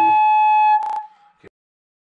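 Loud, steady feedback howl through a small megaphone speaker: one high tone with overtones. It breaks off with a sharp click just under a second in, and a faint click follows.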